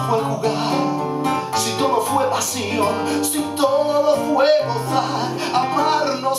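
Two nylon-string classical guitars playing a bolero live, plucked chords under a melody, with a man singing over them.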